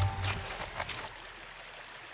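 Background music ending in the first half second, then the faint, steady murmur of a shallow river flowing over stones.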